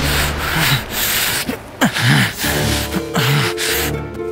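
Dramatic sound effects from a TV-serial soundtrack: a run of about half a dozen whooshing swishes, each a short burst of hiss, laid over background music with low gliding tones, with a brief dip just before the halfway point.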